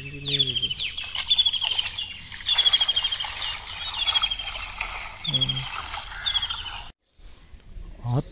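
A bird calling repeatedly in short, high, falling chirp phrases about once a second, over a steady high hiss. A man's voice is heard briefly at the start and again around five seconds in.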